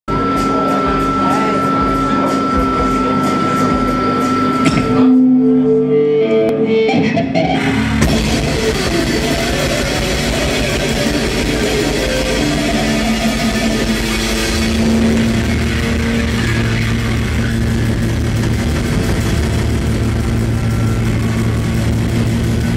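Live sludge/noise rock band playing loud distorted electric guitars. Held guitar notes and a steady high tone at first, then the full band comes in about eight seconds in and plays on densely.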